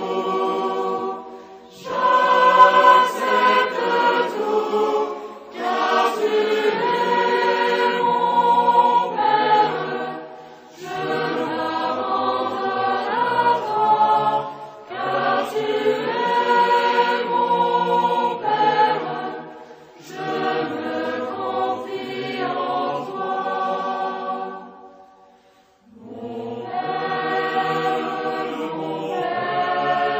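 A choir singing a Catholic hymn in phrases of several seconds, with short breaks between phrases and the longest break near the end.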